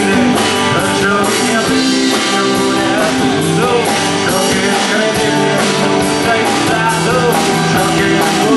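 A live rock band: an electric guitar strummed over a drum kit keeping a steady beat, with a male voice singing at times.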